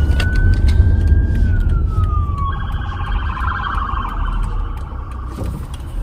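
An emergency-vehicle siren heard from inside a car: a slow wail that rises and then falls, switching about halfway through to a fast warbling yelp that dies away shortly before the end. The car's low road rumble runs underneath.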